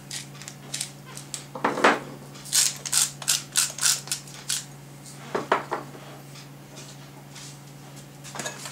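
Pepper mill being twisted over a bowl, grinding pepper in a quick run of short crunching clicks that thicken about midway, then stop.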